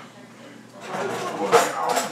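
Indistinct voices in the room, starting about a second in, with a sharp knock or clatter about one and a half seconds in.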